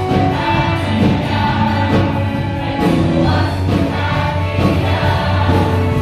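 A church choir of many voices singing a worship song together, over a steady low accompaniment.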